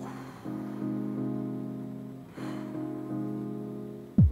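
Soft background music of sustained keyboard chords, with a new chord coming in about half a second in and again about two and a half seconds in.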